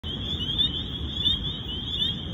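A dense chorus of spring peepers: many high, short, rising peeps overlapping without a break, over a low rumble.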